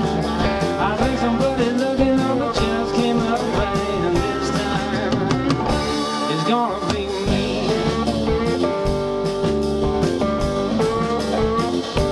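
Live roots-rock band playing: electric and acoustic guitars over electric bass and a drum kit, with a steady beat. The low end thins out briefly a little past the middle.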